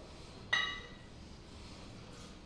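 A single metallic clink with a short ring about half a second in, as two kettlebells knock together while being gripped and lifted off the floor.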